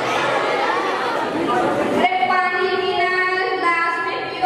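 Chatter of a crowd of children in a large hall, then, after a sudden change about halfway through, a child's voice through a microphone with long, held pitches.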